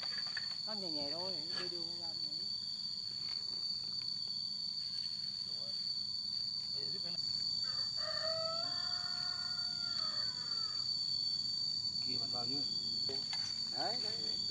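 A rooster crows once past the middle, one long held call that bends down at the end. A steady high insect drone runs under it.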